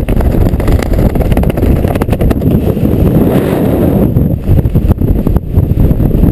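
Wind buffeting the camera microphone under an open parachute canopy: a loud, low rumble that rises and falls irregularly, with occasional short crackles.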